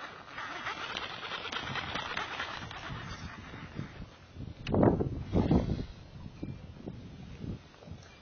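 Baitcasting reel being cranked, a fast, even ticking whir as line is wound in, followed about five seconds in by two short, louder sounds falling in pitch as the lure is cast out.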